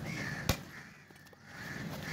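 Crows cawing over and over, with a single sharp chop of a cleaver cutting through cobia into a wooden log block about half a second in.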